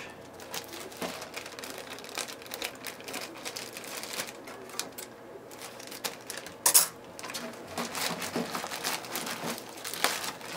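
Thin clear plastic bag crinkling and rustling as it is handled and cut open with scissors. One sharper, louder crackle comes about seven seconds in.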